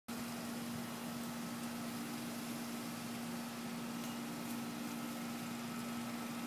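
Outdoor air-conditioning condenser unit running: a steady low hum over an even fan hiss.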